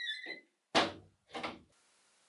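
A short high squeak, then two knocks about half a second apart, the first the louder.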